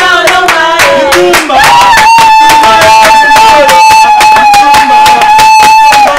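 Group singing with steady rhythmic hand clapping. After about a second and a half, one long high note is held over the clapping to the end.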